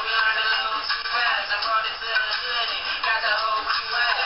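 Hip-hop track with a male voice rapping over it, sounding thin and tinny with almost no bass.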